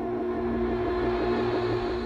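Documentary background music: a steady held drone chord over a deep low rumble.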